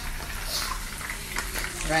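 Chicken pieces frying in a pan of oil, sizzling with scattered small pops and crackles over a low steady hum.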